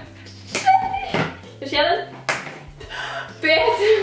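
Girls' voices laughing and squealing, with a few sharp clicks as plastic pins are pushed into a Boom Boom Balloon toy; the balloon does not pop.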